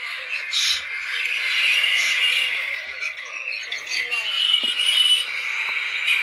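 A dense, continuous chorus of high-pitched animal calls, steady throughout with short shrill notes standing out now and then.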